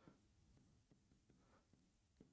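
Near silence, with faint soft ticks of a stylus writing on a digital board.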